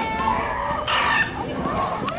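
Squawking, bird-like calls from a large costumed bird character, one near the start and another about a second in, over crowd voices.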